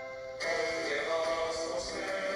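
Music with singing received from an FM broadcast station and played through a TEF6686 receiver's speaker; about half a second in it grows louder and fuller.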